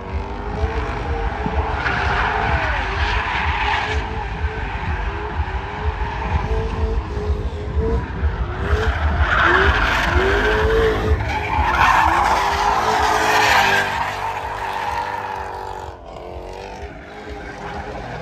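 A drifting car's engine revving up and down as its rear tyres screech and slide. It is loudest through the middle, then fades away near the end.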